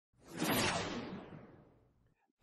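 A whoosh sound effect that swells up about a third of a second in and fades away over about a second, its high end dying off first.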